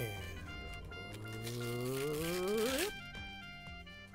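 Tissue paper being torn by hand, a papery rasp from about a second and a half in that stops abruptly just before three seconds, over background music. A long rising vocal glide runs alongside the tear.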